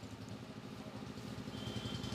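Low, steady hum of an idling engine in the background. A faint, high, steady tone comes in about halfway through.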